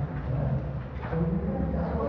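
Low, indistinct male voice murmuring, too unclear to make out words, over a steady low room hum.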